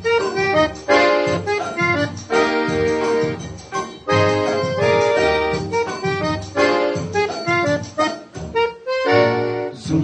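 Instrumental introduction of a 1955 Brazilian popular song, played from a Columbia 78 rpm record: a melody in short phrases that leads into the vocal.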